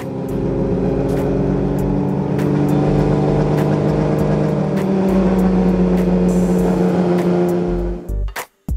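Racing car engines running at a steady idle, with the pitch stepping a little a few times.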